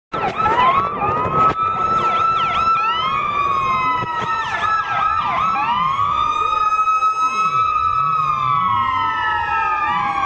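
Several police car sirens sounding at once, their wails rising and falling out of step with each other over a steady high tone. A few knocks come in the first second or two.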